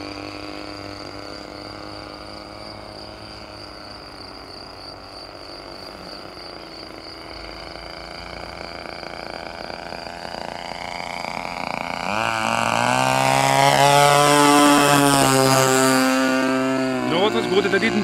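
Turnigy TP31-T 31cc twin-cylinder gas engine of a large RC plane in flight. It is faint at first, grows loud as the plane flies close by about two-thirds of the way in, then drops in pitch as it passes.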